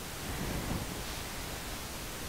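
Steady background hiss of room noise, with no distinct events.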